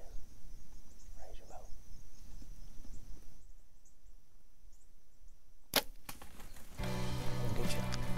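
A compound bow shot: one sharp crack of the released string about three quarters of the way in, followed a moment later by a second, fainter crack. Music comes in just after.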